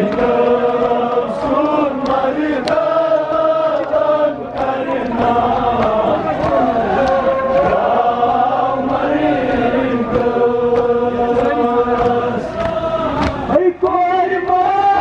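Men's voices chanting a Kashmiri noha, a Muharram lament, in long held lines through a loudspeaker, with mourners' voices joining in. Scattered sharp slaps of chest-beating (matam) cut through the chant.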